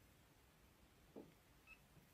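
Near silence: room tone, with one faint brief sound a little after a second in and a tiny short beep near the end.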